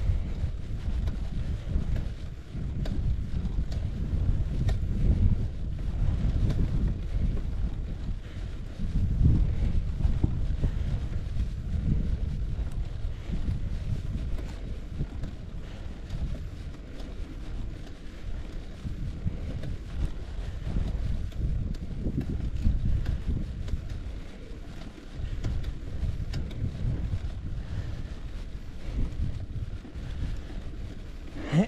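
Wind from riding speed buffeting a GoPro Hero 11's microphone on a moving bicycle: a low rumble that swells and fades in gusts.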